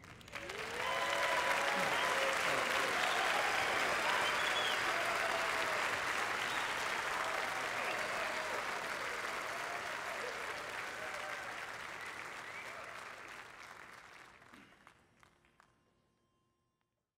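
Audience applauding and cheering after a live a cappella performance. The applause breaks out about half a second in, holds steady with whoops over it, then fades away over the last few seconds.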